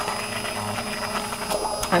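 Handheld immersion blender running steadily, its blade head submerged in a saucepan of chunky tomato soup and blending it.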